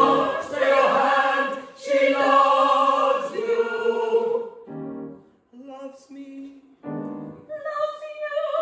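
Mixed-voice chorus singing operetta, holding long notes for about four seconds, then shorter, broken phrases with brief pauses before the voices come back in near the end.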